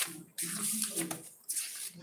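Paper rustling as the pages of a textbook are handled and turned: about three short rushes of hiss with brief gaps between them.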